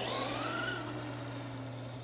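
Traxxas Rustler 2WD's brushed electric motor and drivetrain gears whining as the truck accelerates hard, run on a 3S LiPo through an XL5 speed control. The whine rises in pitch over the first second, then steadies and gets quieter as the truck draws away.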